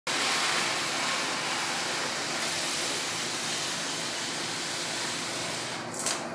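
A cardboard shipping box sliding across a tabletop: a steady scraping hiss that fades slightly, ending in a short louder scuff as it stops.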